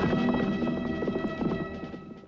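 Trailer music with a clip-clop hoofbeat rhythm, fading down toward the end.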